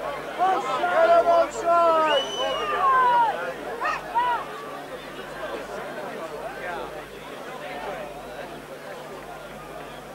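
Spectators' voices from a rugby league crowd: loud overlapping shouts in the first four seconds or so, settling into a lower, steady crowd murmur for the rest.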